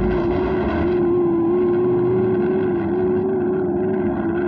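Cartoon sound effect of a flying robot's engine: a steady mechanical drone with a slightly wavering pitch, like an aircraft or motorboat motor.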